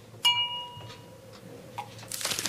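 A single bright, bell-like chime struck about a quarter second in, ringing out and fading within about a second.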